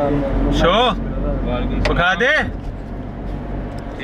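Steady low rumble inside a vehicle's cabin, with a man's voice speaking briefly over it twice.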